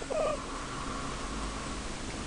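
A newborn baby's brief, high-pitched little squeak just after the start, followed by a faint thin sustained sound.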